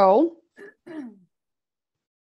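A woman clearing her throat: one loud voiced rasp at the start, followed by two shorter, softer sounds within the next second.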